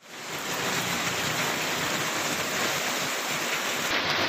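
Heavy rain falling, a steady hiss that fades in within the first half second.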